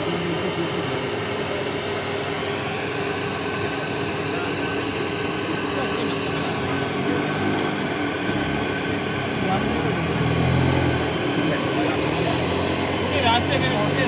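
Busy market background: a steady mechanical hum under indistinct voices, with the voices louder about ten seconds in.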